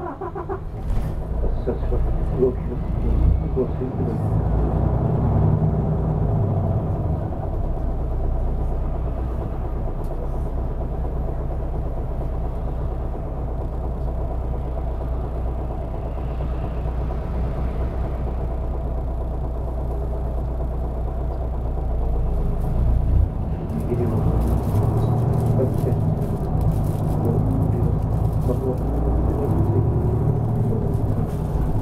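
Nishitetsu city bus diesel engine heard from inside the cabin: it comes in suddenly at the start, as after an idle-stop restart, then runs with a steady low rumble as the bus drives. Road and tyre noise grows louder from about three quarters of the way through.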